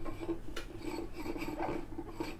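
Base of a stemmed beer glass rubbing and scraping on a coaster as the glass is slid and swirled on the table, a continuous rasping rub with uneven pulses.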